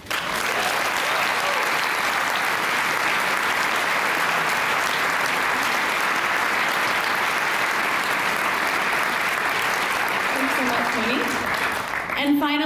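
Audience applauding steadily, the clapping starting all at once at the end of a speech. A woman's voice begins faintly under it near the end.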